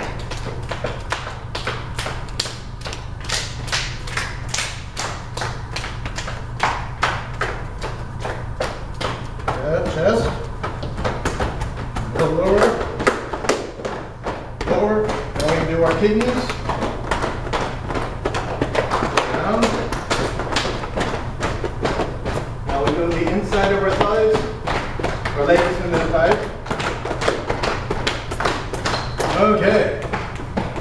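Cupped hands patting the body over and over in a qigong self-patting warm-up: a long run of quick, soft slaps, with voices talking quietly at times.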